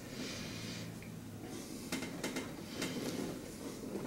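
Quiet room with a soft breath out through the nose, about a second long, at the start, then faint rustling and light ticks of hands pressing on clothing.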